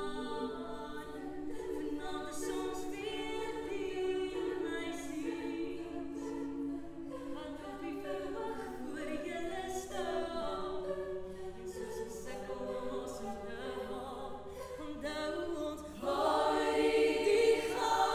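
Women's choir singing a cappella in harmony, swelling markedly louder near the end.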